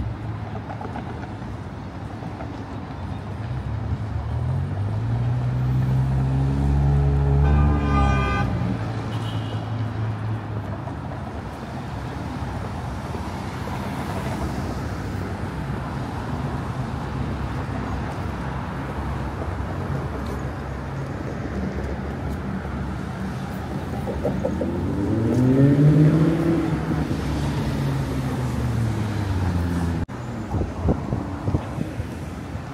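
Street traffic with cars driving past. Twice a vehicle's engine note rises and falls as it goes by, the second time louder, about 26 seconds in.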